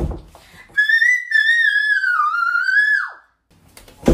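A child's high-pitched squeal, one long wavering note held for about two and a half seconds that then slides steeply down and breaks off. A short thump comes right at the start.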